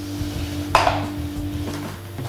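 Plastic salad spinner being handled, its basket and bowl knocking together in a single short clatter about three-quarters of a second in.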